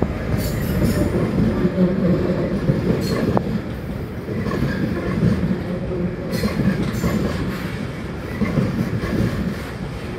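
Class 66 diesel-electric locomotive with its two-stroke V12 running as it hauls the Royal Scotsman coaches past, with a continuous rumble and the wheels clicking over rail joints.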